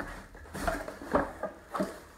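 Cardboard box being opened by hand on a wooden table: a knock at the start, then a few short scrapes and rustles as the flaps are pulled open.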